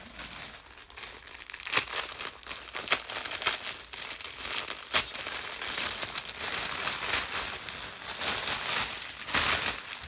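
Clear plastic packaging bag crinkling and rustling as a garment is handled and pulled out of it, in irregular crackles with sharp ticks, louder near the end.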